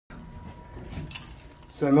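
Light metallic jingling and clinking over a low, steady rumble inside an elevator cab. A man starts speaking right at the end.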